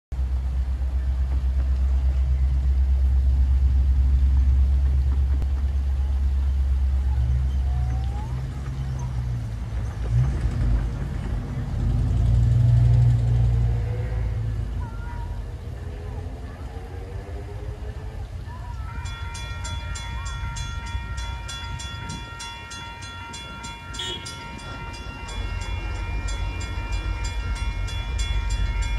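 Railroad grade-crossing warning bells start ringing about two-thirds of the way in, a fast, even run of ringing strikes that signals an approaching train. Before that there is a low rumble.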